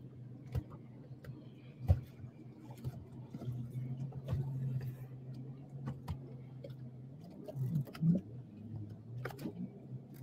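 A low steady hum with scattered light ticks and clicks, and one sharp click about two seconds in.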